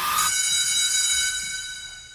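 A high, bell-like ringing tone in a movie trailer's soundtrack. It rings out just as a burst of action noise cuts off and fades away over about two seconds.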